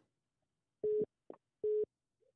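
Two short telephone-line beeps of one steady tone, about three-quarters of a second apart, with a brief click between them, as a caller's line connects.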